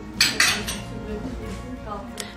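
Metal clothes hangers clinking on a clothing rail as garments are pushed along it, several quick sharp clinks in the first second.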